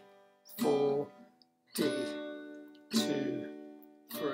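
Acoustic guitar strumming open chords slowly: three single strums about a second and a quarter apart, each left to ring out and fade.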